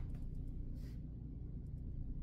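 Quiet sounds of a man drinking beer from a pint glass over a low steady hum, with one soft short hiss about a second in.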